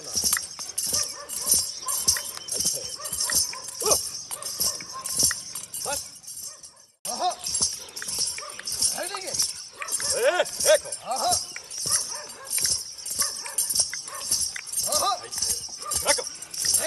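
Bells on a dancing horse's legs jingling in a steady rhythm with its steps, over many short, rising-and-falling calls. The sound cuts out briefly about seven seconds in, then resumes.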